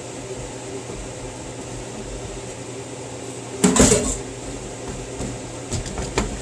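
Hands pressing and working soft biscuit dough on a wooden cutting board, over a steady low kitchen hum. One short, louder burst of handling noise comes a little past the middle.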